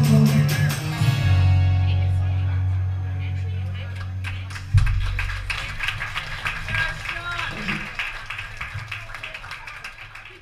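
A live band's closing chord ringing out over a held low bass note, cut off by a loud low final hit about five seconds in; then audience clapping and voices that fade out toward the end.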